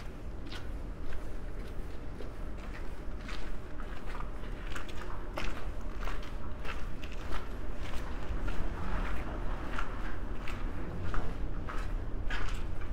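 Footsteps on icy cobblestones, walking carefully downhill at a steady pace, each step a short gritty crunch, over a low steady rumble.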